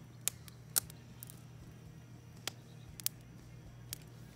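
Wood campfire crackling, with several sharp, separate pops.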